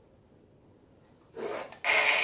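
Near silence, then about 1.4 s in a plastic bowl starts rubbing and scraping on a painted canvas as it is tipped up on one edge and lifted off the poured paint. The scraping gets much louder near the end.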